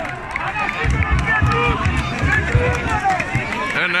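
Football spectators in a small stand talking among themselves: many overlapping voices at once. Low rumbling comes in on the microphone from about a second in.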